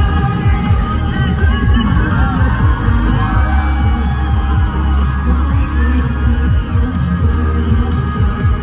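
K-pop song played loud over a concert sound system, with a heavy bass beat and the audience screaming and cheering over it.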